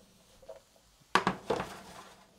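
Frying pan of sliced button mushrooms being worked on the hob: a faint knock, then two sharp clatters of metal on the pan about a second in, half a second apart, with a short ring after each.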